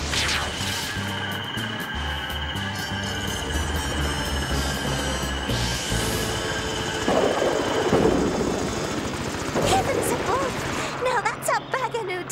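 Cartoon soundtrack music under a rising whoosh about six seconds in, followed by a loud, noisy crash-and-rumble sound effect. Voices come in near the end.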